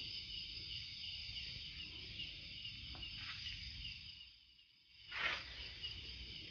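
Night insects, crickets among them, chirping steadily in a high, pulsing chorus over a low rumble, with a brief burst of rustling noise about five seconds in.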